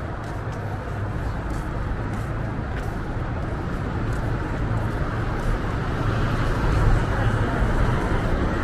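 Street traffic going by on a busy city avenue, a steady rumble of engines and tyres that grows louder toward the end as vehicles pass close.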